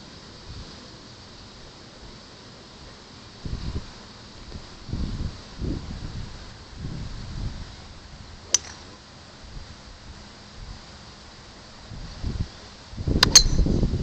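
Golf iron striking a ball on turf: one sharp click about eight and a half seconds in, and a louder pair of clicks near the end. Between them come a few short low rumbles of wind on the microphone.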